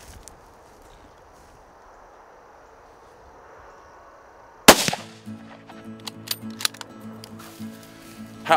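A single 7mm-08 rifle shot, sudden and very loud, a little past halfway, after quiet open-field ambience. Background music comes in right after the shot.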